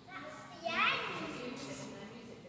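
A child's high voice, a short call that rises in pitch about half a second in, over a steady murmur of other people talking.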